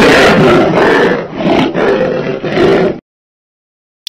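Lion roaring: one long, rough roar that swells and dips several times and cuts off about three seconds in.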